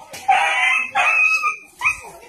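A dog yelping and howling: two long cries, then a short one near the end.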